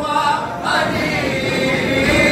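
A crowd of male mourners chanting a lament together without instruments, many voices holding and bending the same notes, a Muharram mourning chant.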